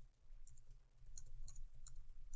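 Faint, light clicks of computer keyboard keys being typed, scattered irregularly over a low steady hum.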